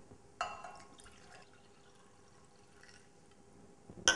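Zinc sulfate solution being poured from a glass flask into a glass beaker: a faint pour that starts suddenly about half a second in and trails off over the next second.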